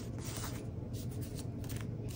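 Faint rustling of clear sticker sheets being handled and set down on a desk, with a few light crinkles, over a low steady hum.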